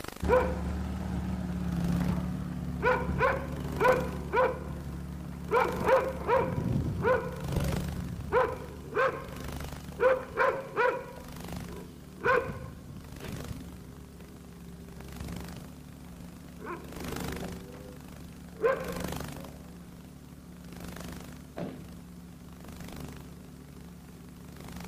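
A dog barking over and over in quick runs of short barks, then only a few single barks in the second half. Under it runs a steady low hum, like a car engine idling.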